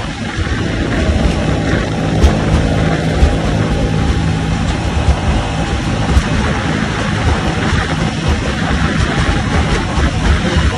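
A mini jet boat's engine, which sounds like a jet ski motor, runs steadily under way against the current. Water rushes past the hull and wind buffets the microphone. Two sharp knocks stand out, about two and six seconds in.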